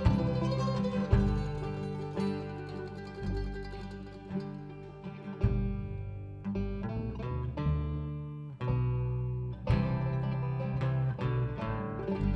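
Mandolin picked in an instrumental passage of single notes and chords, each note ringing and dying away, over low sustained notes. In the second half the playing thins to separate, spaced-out plucks.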